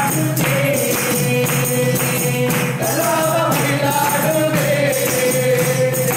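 Devotional bhajan singing: a man's voice leading held, gliding notes with others joining, over a tambourine shaken and struck in a steady beat about twice a second.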